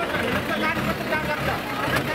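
Several people talking at once over the low rumble of vehicle engines in a traffic jam.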